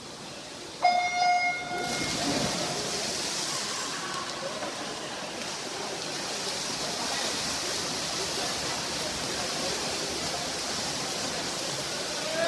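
Electronic swim-start horn sounding once about a second in, a steady pitched beep lasting about a second that signals the start of the race. Then a steady wash of water splashing from the swimmers and crowd noise in the natatorium.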